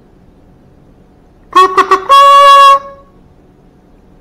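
Plastic toy kazoo blown in a short fanfare: three quick buzzy notes, then one longer, higher held note.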